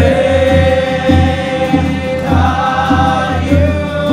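Group worship singing: voices hold long notes over an accompaniment with a steady low pulse.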